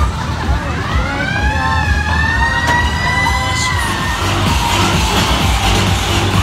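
Fairground ride music with a thumping beat. Over it comes one long wailing tone that rises over about a second, holds, and falls away about four seconds in.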